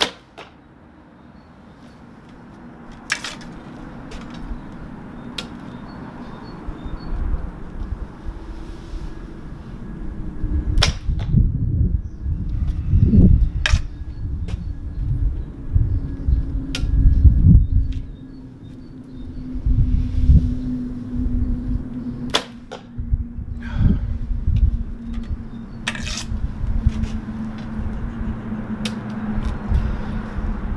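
A traditional bow shot: the bowstring snaps sharply as the arrow is released at the very start. Scattered light clicks and knocks of the bow being handled follow, over irregular loud low rumbling and, from about ten seconds in, a steady low drone.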